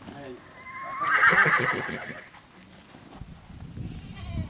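A horse whinnies for about a second, starting about a second in: a quavering call that rises in pitch. Hoof steps come from a horse stepping back out of a trailer.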